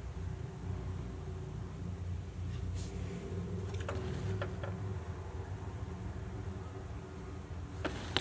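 Steady low background hum, with a few faint light clicks about three to four and a half seconds in.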